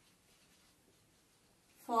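Faint scratching of a marker pen writing on a whiteboard. A woman's voice starts near the end.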